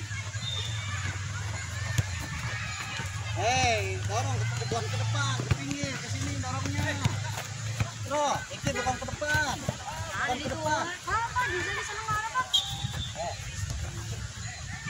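Children's voices calling and shouting across a football pitch, with a few sharp knocks in between. A low steady hum runs under the first half and then fades.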